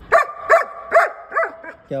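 German Shepherd dog giving a quick series of about five short, high-pitched calls, each rising and falling in pitch.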